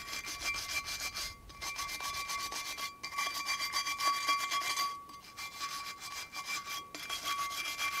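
Soft wire brush scrubbing loose rust off a rusty cast iron waffle iron in quick back-and-forth strokes, with a few brief pauses. A faint steady ringing tone runs underneath.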